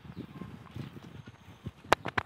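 A bicycle rattling and knocking as it rides over a paved path, in uneven low thumps, with one sharp click at the end.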